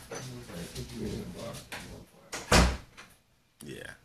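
A single short, loud thump about two and a half seconds in, over faint low background sound.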